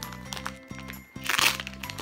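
Plastic squishy packaging crinkling and crackling as the bag is pulled open, loudest in a burst about a second and a half in, over background music with steady bass notes.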